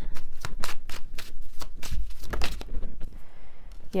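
A tarot deck being shuffled in the hands: a quick run of crisp card flicks and slaps, about eight a second, that thins out and goes quiet before three seconds in.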